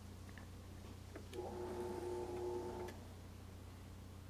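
Bench drill press with a small twist bit drilling a relief hole in hardwood, heard faintly: a steady low hum, a few light ticks, and a steady pitched tone that starts about a second and a half in and stops about a second and a half later.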